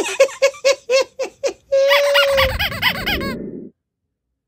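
A man laughing hard in high, squeaky bursts, about four a second, then a drawn-out squeaky note and more wavering laughter over a low rumble. It cuts off abruptly shortly before the end.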